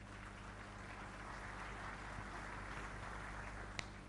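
Faint audience applause in a hall, swelling a little and then easing, over a steady low hum, with one short click near the end.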